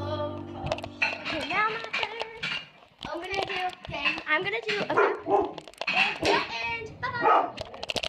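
Background pop song ending within the first second. It is followed by young girls' voices, excited and indistinct, calling out and talking over each other.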